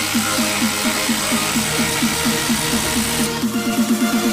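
Milwaukee M12 impact driver hammering as it drives a bolt with a socket, stopping about three seconds in, over electronic dance music with a steady beat.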